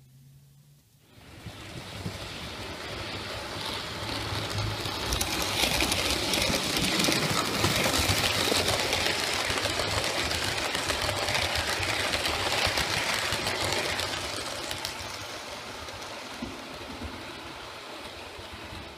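OO gauge model train running past on the layout track. The sound builds from about a second in, is loudest in the middle, and fades toward the end.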